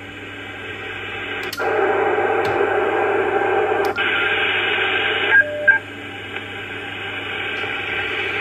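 Kenwood TS-590 HF transceiver's receiver hiss in upper sideband, heard through its speaker as it switches from the 15 m to the 12 m band. There are sharp clicks as keys are pressed and the band changes. The hiss grows louder about a second and a half in and drops back a little after five seconds.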